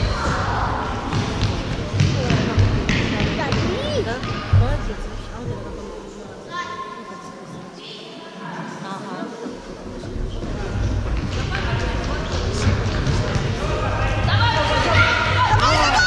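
A futsal ball thudding off the floor and being kicked in an echoing sports hall, a few sharp knocks in the first half. Voices call out across the hall, and children's shouting builds near the end.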